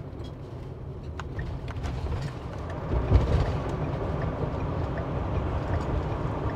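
Engine and road noise heard from inside a vehicle's cab as it climbs a freeway on-ramp and merges: a steady low rumble that grows louder about halfway through.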